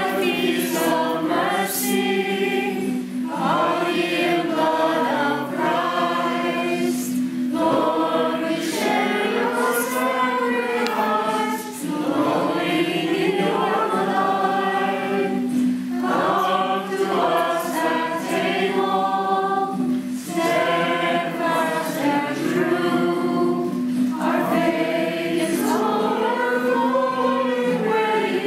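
A small congregation of men and women singing a religious song together in phrases of about two seconds, with brief pauses for breath between them.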